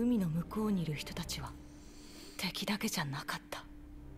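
Japanese-language anime dialogue: one voice speaking two short phrases, with a faint steady hum underneath.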